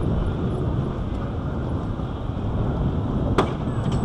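Wooden roller coaster train rolling slowly along the track, a steady rumble of wheels on wood with one sharp clack about three and a half seconds in.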